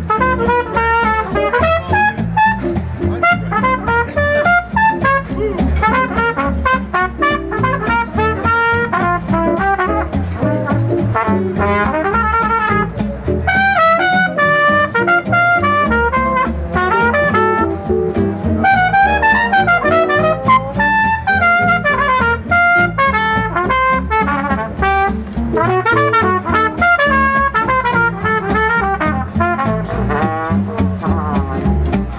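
Live swing jazz: a trumpet plays a solo of quick runs over acoustic guitar chords and a plucked string bass walking a steady beat.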